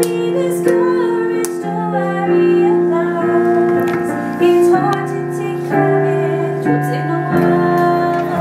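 A woman singing while accompanying herself on a digital piano, its held chords changing about once a second under her voice.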